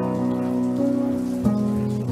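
Guitar music: a held chord ringing on, with fresh notes struck about a second and a half in.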